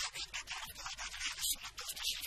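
A man's voice speaking into a microphone in short, rapid bursts, sounding thin and harsh with almost no low end.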